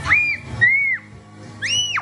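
Three short whistled notes, each rising and then falling in pitch, over background music.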